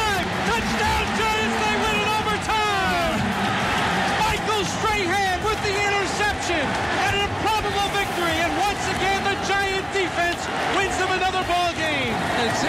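An excited male broadcast announcer shouting play-by-play at a high pitch, over a steady background of stadium crowd noise.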